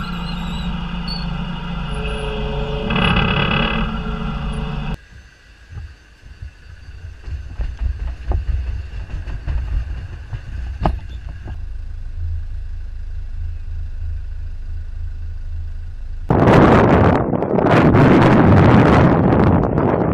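A forklift truck's engine running at a C-130 Hercules's cargo ramp, with a steady whine over it that swells briefly about three seconds in. About five seconds in the sound drops to a quieter low engine rumble with a few clicks and knocks. About sixteen seconds in a loud rushing noise takes over as a C-130J Hercules turboprop comes in to land.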